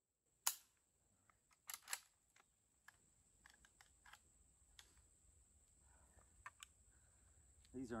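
Handling of an M1 Carbine during a magazine change: a sharp crack about half a second in, two more metallic clicks just before the two-second mark, then small scattered clicks and rattles of the rifle and magazine, all faint.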